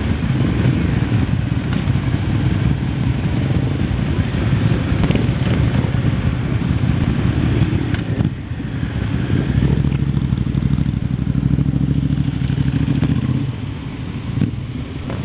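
Motorcycle engines running: nearby bikes idle with a steady low beat while other motorcycles pull away and ride past one after another. The engine note changes briefly about two thirds of the way through.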